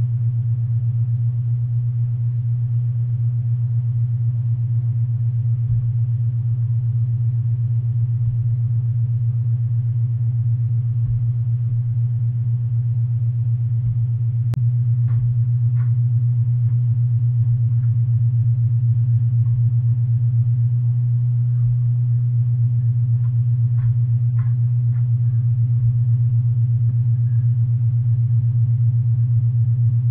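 A loud, steady low hum, a little louder after about halfway, with a few faint short clinks about halfway and again near the end.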